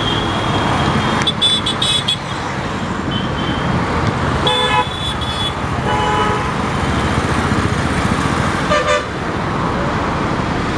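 Steady road traffic noise with several vehicle horn toots: one lasting about a second just before the middle, a shorter one after it and another briefly near the end.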